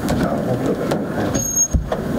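Indistinct hubbub of several people moving about and talking quietly in a meeting room. A brief high beep comes about a second and a half in, followed by a thump near the end.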